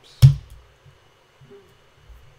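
A single sharp keystroke on a computer keyboard: the Return key struck to run a terminal command.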